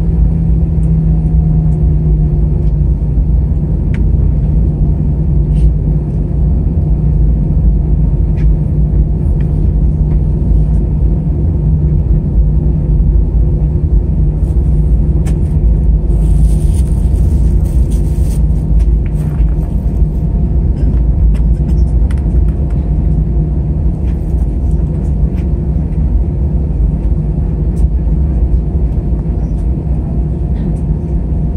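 Airbus A320 cabin noise at taxi power, heard from a window seat beside the engine: a loud, steady low rumble with a constant hum as the airliner rolls slowly along the runway. A brief hiss sounds about halfway through.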